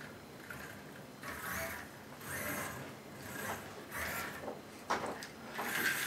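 Soft rubbing and scraping of plastic Cubelets robot blocks being handled and slid on a paper-covered table, in quiet swells about once a second, with one sharp click near the end as the magnetic cubes snap together.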